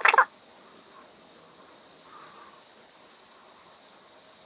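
A brief, loud, high-pitched cry that wavers in pitch and cuts off about a quarter second in, followed by faint room tone.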